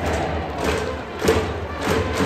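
Stadium cheering section playing a fight song, a drum beating a steady rhythm about every 0.6 s under a held-note melody.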